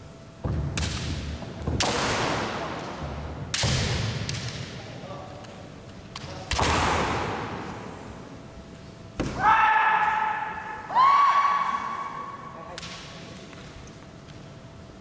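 Kendo exchanges in a gymnasium hall: four sudden loud bursts of foot stamps on the wooden floor, bamboo shinai strikes and shouts that echo away, then two long high-pitched kiai shouts, one about nine seconds in and one about eleven seconds in.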